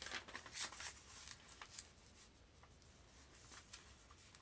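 Faint rustling and brushing of paper being folded over and creased flat by hand, a cluster of soft scrapes in the first two seconds, then only occasional light touches.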